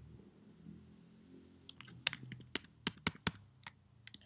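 Computer keyboard keys tapped: a run of about eight quick keystrokes in the second half.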